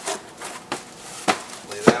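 Long cardboard packing piece being handled as it comes out of a cardboard box and is laid on the floor: four or five sharp knocks and scrapes, the loudest near the end.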